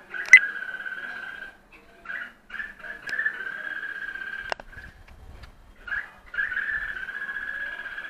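Rapid, buzzy chattering call of a small animal in three long bouts of a second or more each, with a sharp click near the start and another about four and a half seconds in.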